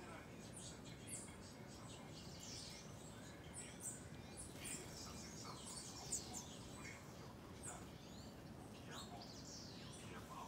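Small songbirds chirping: many short, high calls, some sweeping down in pitch, scattered irregularly over a faint steady background hiss.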